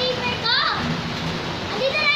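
Steady rain falling on wet concrete and puddles, with high-pitched children's voices calling and squealing over it, one rising squeal about half a second in and more near the end.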